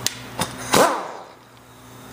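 Two sharp clicks, then about three-quarters of a second in a short burst from a handheld air tool running a cap screw down on a gear pump's end plate, its whine falling in pitch as it stops.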